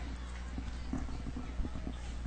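A lull in the commentary: faint knocks and handling noise from the booth microphone being passed over, over a steady low electrical hum and the distant murmur of the stadium crowd.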